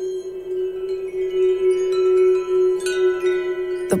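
A magic sound effect: shimmering, chime-like ringing tones over a steady held drone, with a fresh cluster of high chimes coming in near the end. It marks a spell being worked to heal a gunshot wound.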